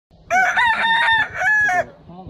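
A penguin giving a loud call, a long phrase and then a shorter one.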